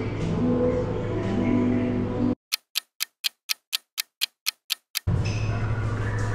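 Background music over a steady hum, cut to dead silence for nearly three seconds in the middle while a clock-ticking sound effect plays: about eleven sharp ticks, four a second.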